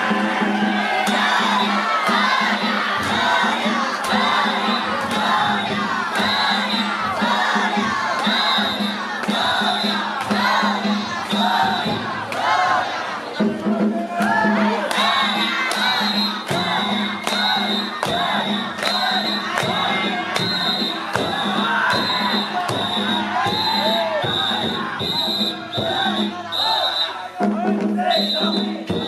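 Many voices of danjiri rope-pullers shouting and chanting together over the float's festival percussion, a steady beat of drum and bell strokes about twice a second.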